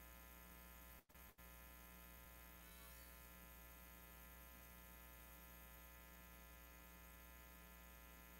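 Near silence: a faint steady electrical mains hum, cutting out briefly about a second in.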